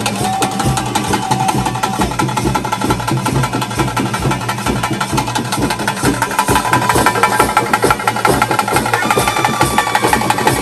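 Live ritual band music: fast, dense drumming with a high, held melody line over it.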